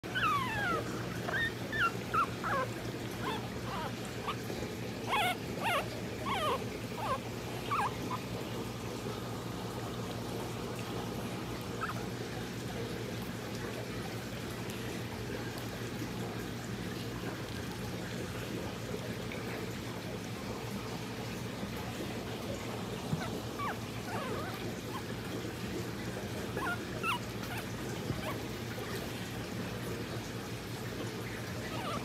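Chihuahua puppies whimpering in short, high squeaks that slide in pitch. The squeaks come thickly in the first several seconds, then only now and then, over a steady low hum.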